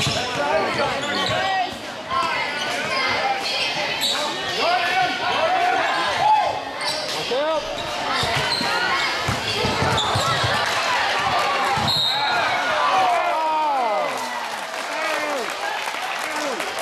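Live basketball game in a gymnasium: a ball bouncing on the hardwood floor with a few sharp strikes, amid constant crowd and player voices and shouts echoing in the hall.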